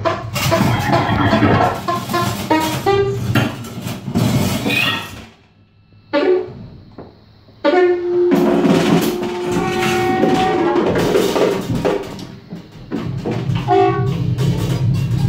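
Free improvised music by saxophone, electric guitar and drum kit, loud and dense, with many drum hits. It drops out briefly about five seconds in, then comes back with a long held note over the drums.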